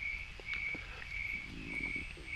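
A cricket chirping steadily, short high chirps repeating about two or three times a second.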